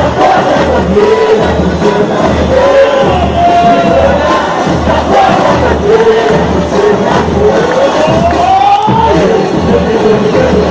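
A samba-enredo with a steady low drumbeat pulsing about twice a second, sung by a huge crowd that cheers along; one long sung phrase rises in pitch near the end.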